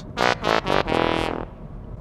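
A short brassy comedy 'fail' sound effect: three quick notes and a longer fourth, marking the failed bottle test.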